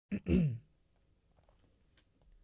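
A person clearing their throat: a short two-part "ahem" that falls in pitch, in the first half-second.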